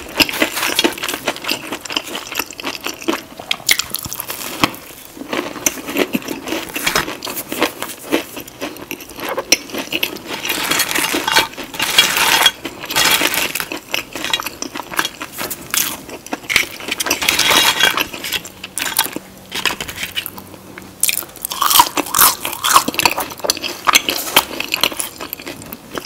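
Close-miked crunching and chewing of crispy battered fried chicken and shrimp, a run of irregular crackly crunches with louder spells as fresh bites are taken.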